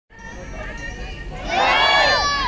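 A crowd murmurs, then about one and a half seconds in many voices shout out together loudly.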